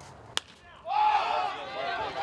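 A single sharp crack of a baseball bat hitting the ball, then about half a second later a crowd cheering and shouting that carries on loudly.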